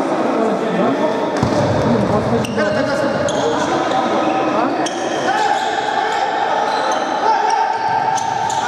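Echoing sports-hall sound: several voices mixed together, with a few sharp knocks and short rising squeaks on the court, and a steady held tone in the second half.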